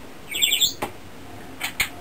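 A brief burst of high chirping about half a second in, then a few sharp clicks as the guitar amplifier's controls are handled.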